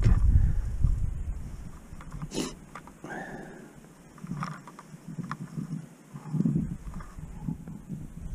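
Faint handling sounds of gloved hands winding fishing line onto a tip-up spool, small clicks scattered throughout, over low rumbling that fits wind on the microphone.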